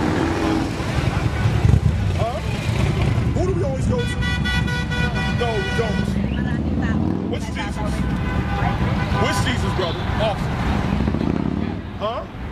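Road traffic with a steady low rumble, and a vehicle horn sounding for about two seconds near the middle, with voices around it.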